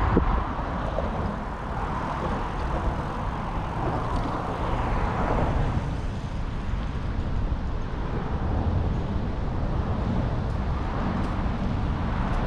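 Steady roar of highway traffic on the overpass, mixed with wind buffeting the camera microphone as the bicycle rides along the paved trail. The traffic noise swells for a couple of seconds in the middle, while the bike passes beneath the overpass.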